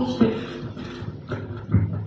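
A pause in speech into a handheld microphone held close to the mouth: faint room noise with short breath and mouth sounds, the clearest just before the end.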